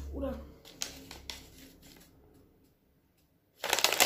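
A few faint clicks and a near-silent pause, then about three and a half seconds in a sudden loud run of rustling and clicking as food packaging is handled.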